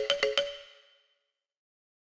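A short chime-like intro jingle: a quick run of bright, ringing notes that dies away within the first second.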